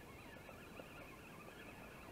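Near silence: faint outdoor background with no distinct sound.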